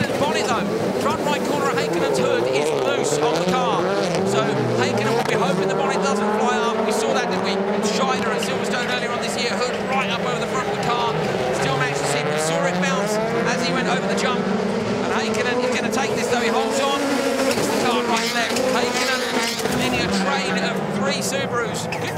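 Turbocharged Subaru WRX STI rallycross cars racing flat out in a pack, their engine notes rising and falling again and again through the gear changes and corners.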